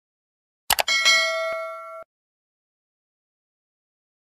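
Two quick mouse-click sound effects, then at once a bright chime-like ding with several ringing tones that lasts about a second and cuts off abruptly: the click-and-ding effect of a subscribe animation's notification bell.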